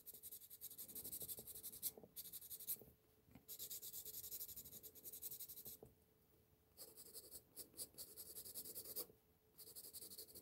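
Graphite pencil shading on sketchbook paper with the side of the lead: faint strokes in runs of a couple of seconds, pausing briefly about three, six and nine seconds in.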